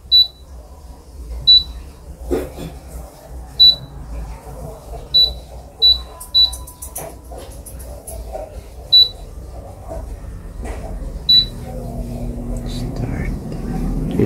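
Panasonic digital air fryer's touch panel beeping with each button press: eight short, high beeps at uneven intervals as the cooking setting is entered. After the last beep, near the end, the fryer starts up and its fan sets in with a low hum that grows steadily louder.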